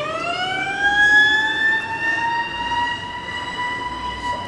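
A sustained pitched tone, rich in overtones, that glides upward right at the start and then holds steady at the higher pitch.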